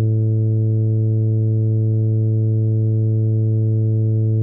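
A synthesized tuba holding one long, low, steady note from sheet-music playback.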